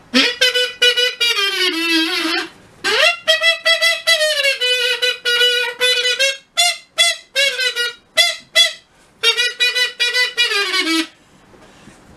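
A solo reedy melody line between sung verses, with no words. Held notes with slides between them, including a rising slide about three seconds in, then a run of short clipped notes in the middle, and a falling phrase that stops about a second before the end.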